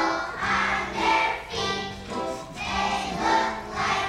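A kindergarten children's choir singing together in phrases of about a second each, over a steady low accompaniment.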